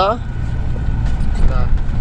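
Engine and road noise heard from inside a moving truck's cab: a steady low drone with a faint steady whine above it.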